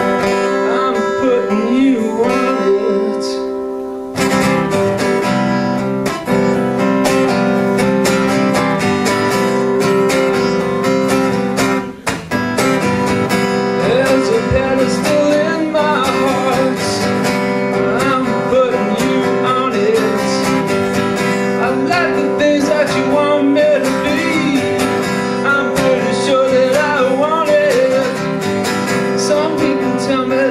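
Acoustic guitar strummed live, a steady run of chords. The sound fills out with a fuller low end about four seconds in, and there is a short drop just after twelve seconds.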